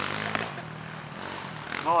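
Men's voices in a brief exchange, with a short spoken word near the end, over steady low background noise.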